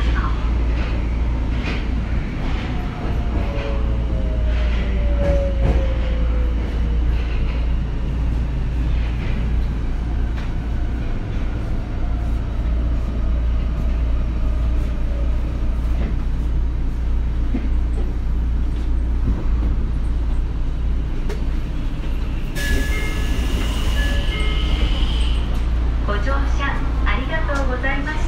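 A stopped Tokyo Metro 02 series subway train standing at an underground platform, with a steady low hum throughout. A faint falling tone comes a few seconds in. Near the end there is a loud hiss, about two seconds long, with whistling tones in it.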